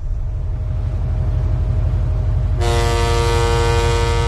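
A ship's horn sounds one long, steady, multi-tone blast starting about two and a half seconds in, over a low pulsing rumble.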